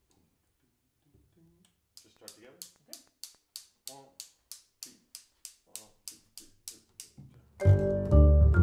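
A tempo count-off: sharp clicks at a steady three a second, with soft voice sounds beneath. Near the end, vibraphone and double bass come in together, much louder.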